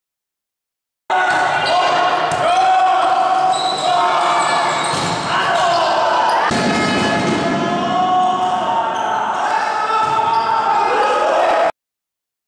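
Volleyball match sound in a sports hall: the ball being struck and bounced, with players and spectators shouting and calling. It starts abruptly about a second in and cuts off just before the end.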